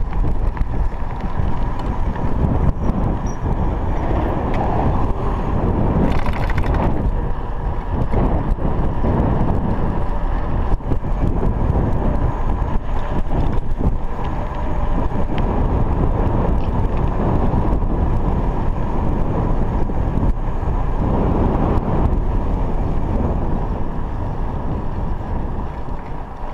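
Steady wind buffeting the microphone of a chest-mounted camera on a moving bicycle, a loud low rumble mixed with the tyre noise of a 29er mountain bike rolling on tarmac. A brief hiss about six seconds in.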